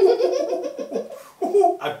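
Hearty laughter in a burst that fades after about a second, then a shorter laugh near the end.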